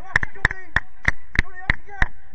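A sharp click repeating evenly about three times a second, with faint distant voices between the clicks.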